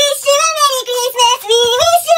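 High-pitched singing voice carrying a bouncy melody, the song track laid under the clip.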